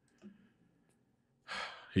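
Near silence, then about one and a half seconds in a man breathes out audibly in a sigh that runs straight into speech.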